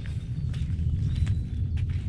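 Footsteps on forest ground as a hiker walks, a few faint soft clicks over a steady low rumble.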